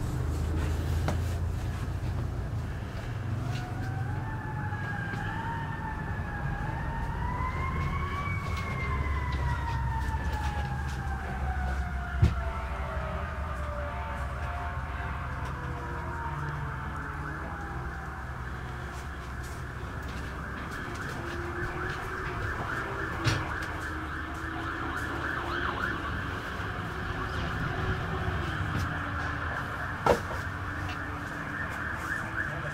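A siren wailing, its pitch wavering upward for several seconds and then falling in one long, slow glide, over a steady low rumble. A sharp knock sounds about halfway through, and another later.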